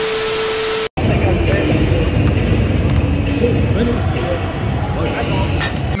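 TV-static glitch effect: a hiss with a steady beep tone for just under a second, then cut off sharply. After a moment's silence comes a loud, noisy stretch of voices over a dense background.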